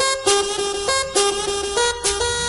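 Tribal-house dance music from a DJ mix: a bright, loud pitched riff with sharp stabs recurring several times.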